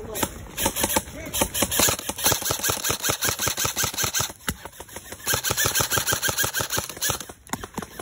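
Airsoft guns firing long full-auto bursts: a rapid, even train of sharp clicks at about a dozen shots a second. There are two long runs, with a short break about four and a half seconds in.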